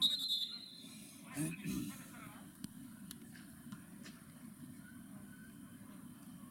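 A football kicked with a sharp thud, followed by a brief high ringing tone lasting under a second. About a second and a half later comes a short shout from a player, then only faint background chatter.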